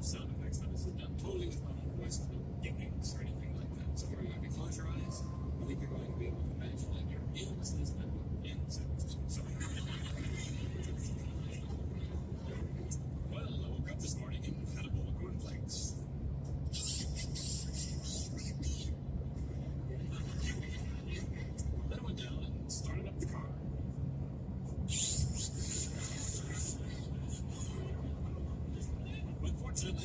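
Steady road and engine noise inside a car cabin at highway speed, a low rumble with swells of hiss several times.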